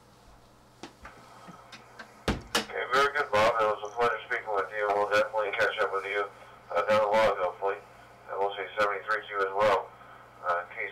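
Yaesu FTM-100D's speaker: a steady low hum, then a click about two seconds in as a station comes through over the WIRES-X link, and a man's voice talking for the rest of the time.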